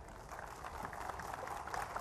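Audience applauding, the clapping starting faint and growing steadily louder.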